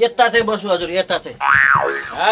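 A comic 'boing' sound effect, one pitched glide rising and falling, about one and a half seconds in, after a short stretch of a man's voice.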